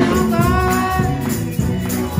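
Live gospel music: a woman's singing voice holds a note over a band keeping a steady beat, with percussion and hand clapping.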